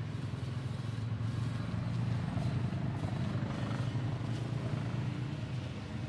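Pressure washer running steadily: a low motor drone under the hiss of the high-pressure water jet.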